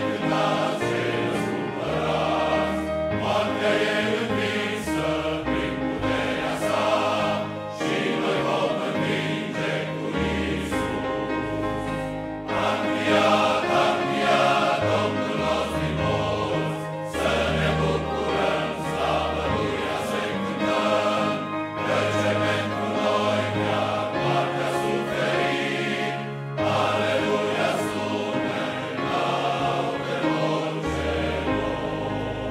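Large men's choir singing a sacred piece in parts, with deep bass notes under the melody. Phrases are separated by short breaths, about every four to five seconds.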